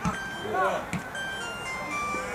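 Footballers shouting calls on the pitch. From about halfway through, a short electronic jingle of steady high notes plays over them.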